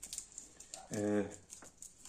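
Faint small clicks and crackles of fingers picking seeds out of dried red peppers onto a wooden board, with a man's voice briefly holding a hesitation sound about a second in.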